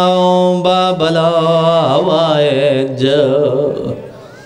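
A man chanting devotional recitation: a long held sung note, a brief break about half a second in, then a wavering, ornamented phrase that dies away near the end.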